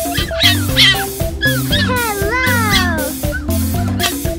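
Fennec fox giving high-pitched cries over upbeat background music: a few short, sharp cries in the first second, then longer whining cries that fall in pitch from about one and a half to three seconds in.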